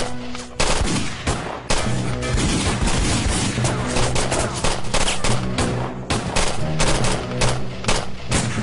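Gunfire: many shots in quick succession, sharp cracks coming densely through the whole stretch, over a sustained music score.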